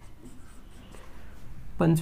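Marker pen writing on a whiteboard: faint scratching strokes as the answer is written out.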